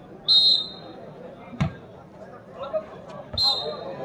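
A referee's whistle blows a short blast, about a second later a volleyball is struck once with a sharp smack, and the whistle blows a second short blast near the end.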